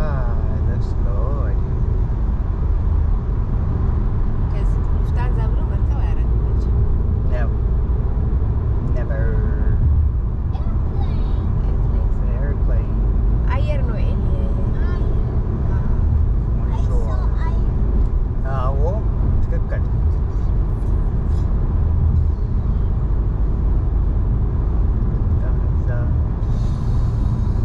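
Steady low road and engine rumble of a car driving along a motorway, heard inside the cabin, with voices talking now and then over it.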